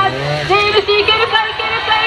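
A trials motorcycle engine revving, its pitch rising in the first half second as the bike is worked up a rock step, with people's voices shouting over it.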